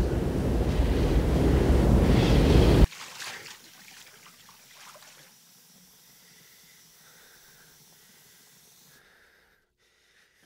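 Loud television static hiss, getting slightly louder, that cuts off suddenly about three seconds in; after it only faint, scattered low sounds remain.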